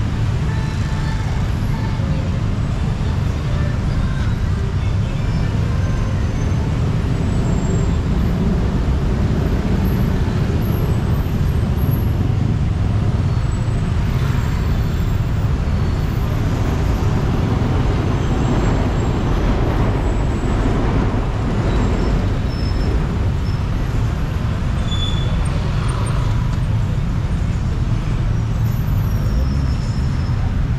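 Steady road traffic noise from cars and motorbikes passing on a busy multi-lane city road, with a constant low rumble.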